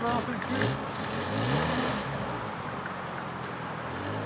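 Lada Niva engine revving up and down again and again under heavy load as the 4x4 struggles to climb a steep dirt mound.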